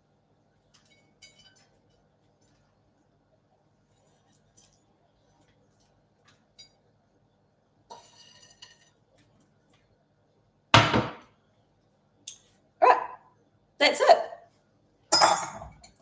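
Faint light clicks and rustles of seeds being tipped from a frying pan and sprinkled by hand onto a salad, followed in the last few seconds by four short loud sounds, one of them a woman's voice.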